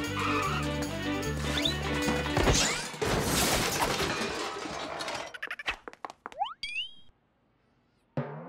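Cartoon background music cuts off about two and a half seconds in with a loud crash sound effect, a clattering wash of noise that dies away. It is followed by a few quick rising whistle-like sweeps, then silence.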